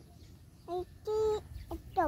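A chicken calling twice: a short note about two-thirds of a second in, then a longer held note about a second in.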